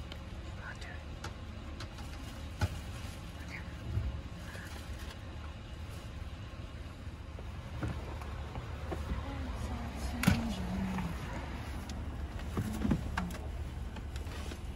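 2015 Honda Odyssey's 3.5-litre V6 idling steadily, with no misfire now that the cylinder-three ignition coil has been replaced. A few sharp clicks come from a handheld OBD II code reader's buttons being pressed.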